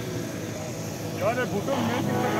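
A motorcycle engine idling steadily, with a short spoken word about halfway through.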